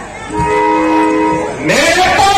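A held chord of several steady tones lasts about a second from the stage's musical accompaniment. Near the end, a man's voice rises into a loud call.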